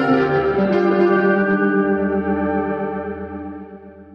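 Indie rock track ending on a held, effects-laden electric guitar chord that wavers with a chorus effect and fades out steadily.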